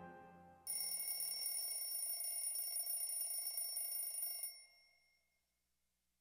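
The band's final chord fades out, then a mechanical alarm-clock bell rings steadily for about four seconds and stops abruptly.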